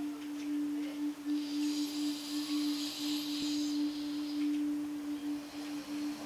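Calm meditation background music: a single sustained ringing tone like a singing bowl, held steady with a slight wavering. A soft hiss swells and fades between about one and four and a half seconds in.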